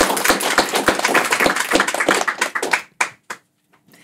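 Audience applauding: dense clapping that thins to a few last claps and stops about three seconds in.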